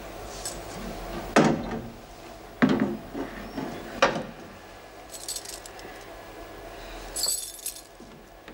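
Three heavy knocks on a metal cell door, a second or so apart, followed by a bunch of keys jangling twice near the end.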